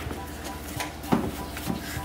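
A plastic scoop scraping and packing sand into a plastic cone mould, with a few light plastic knocks about halfway through.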